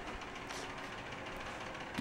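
Faint, steady background hiss of a quiet room (room tone), with no distinct event.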